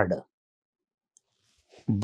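A man's speech trails off, then a near-silent pause in a small room with a single faint click about a second in and a soft breath before he starts speaking again at the end.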